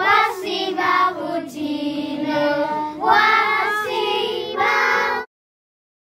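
A group of young children singing together, the song cutting off suddenly about five seconds in.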